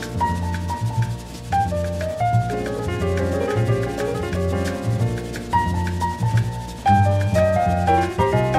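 Bossa nova jazz played by a piano trio: piano phrases over walking low bass notes, with light percussion ticking at a steady pulse.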